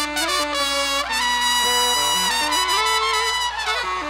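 Live trumpet and saxophone playing a quick run of notes, then holding a long note together from about a second in, which falls away in pitch just before the end.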